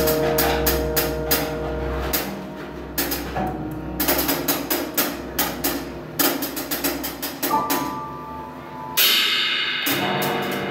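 Free-improvised drum kit and prepared upright piano: rapid, irregular drum and cymbal strikes with a few held tones. A louder cymbal-like wash swells up about nine seconds in.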